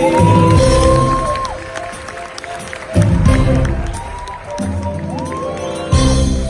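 Live band playing a dramatic opening. Heavy low chords hit several times, a few seconds apart, and a note glides up into a held high tone before some of them.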